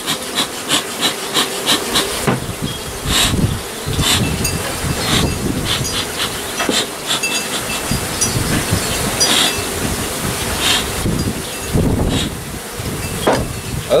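Bee smoker's bellows worked in quick puffs, a run of short knocks about three a second at first and then more irregular, to drive the honeybees off the comb. Under it a honeybee colony buzzes.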